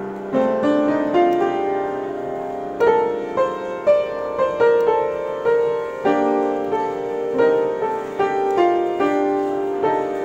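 Improvisation on a street piano: a slow melody of single struck notes, each ringing and fading, stepping upward over held lower notes at about two notes a second, with a brief pause about two seconds in.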